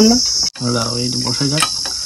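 Insects chirring steadily in a high band, under men talking. The sound cuts out for a moment about half a second in.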